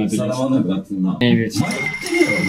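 Men talking. About one and a half seconds in, a steady high tone comes in under the voices.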